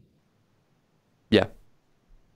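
Near silence as the video-call audio drops out, broken about a second in by one short spoken "yeah".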